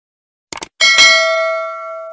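Two quick clicks, then a bright bell ding that rings on with a steady tone and fades over about a second and a half: the stock sound effect of a subscribe-button animation, a cursor click followed by the notification-bell chime.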